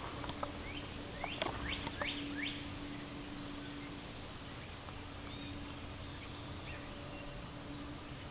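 Outdoor ambience with a bird giving a run of about five quick rising chirps near the start, then a few fainter calls later, over a steady low hum and background noise.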